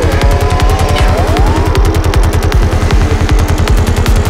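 Dark psytrance at 156 bpm: a steady kick drum and rapid rolling bassline, about ten low hits a second, with synth tones gliding up and down during the first two seconds.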